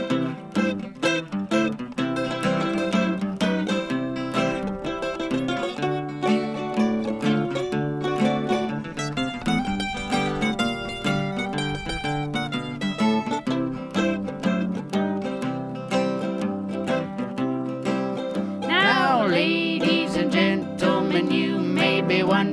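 Instrumental break on acoustic guitar and mandolin, both plucked and strummed in a country/old-time style, with rapid repeated mandolin-style notes around the middle.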